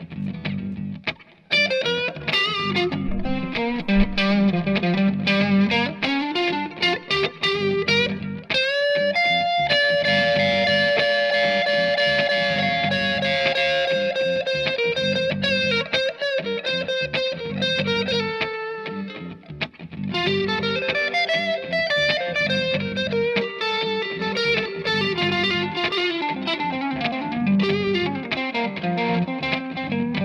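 Electric guitar, a Fender Stratocaster sent over an Xvive wireless system through pedal-board effects and an amp, playing lead lines. There are picked single notes at first, then one long sustained note from about 9 to 19 seconds in, then more picked runs.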